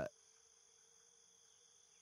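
Near silence, with only a faint steady high-pitched electronic hum.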